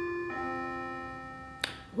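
Clock chiming the quarter hour: one ringing note carries on, then a lower note is struck about a third of a second in, and both slowly fade. A brief click comes near the end.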